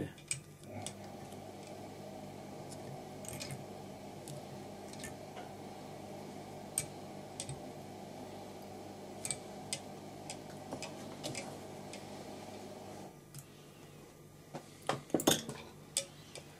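Faint, scattered clicks and taps of fly-tying tools at a vise, with a few sharper clicks near the end, over a steady low hum that cuts off abruptly about thirteen seconds in.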